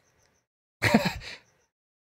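A man's single short, breathy vocal burst about a second in, like a stifled laugh.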